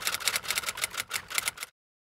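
Typewriter keystroke sound effect: a rapid, even run of key strikes, about six a second, that cuts off suddenly near the end.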